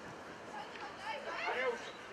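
Shouted voices calling out across an outdoor football pitch, several short high calls, the loudest about a second and a half in.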